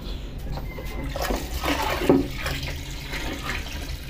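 Water running steadily from a hose into a plastic drum as the drum fills.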